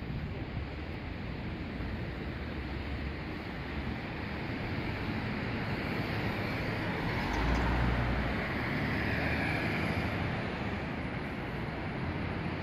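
Road traffic on a wide city street: a steady noise of car engines and tyres, swelling as a vehicle passes close by about seven to ten seconds in.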